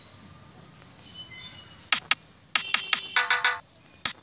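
Electronic drum pattern playing back from FL Studio Mobile. After a quiet start, kick drum hits with a dropping pitch come in about two seconds in, followed by a quick run of short, repeated pitched synth stabs.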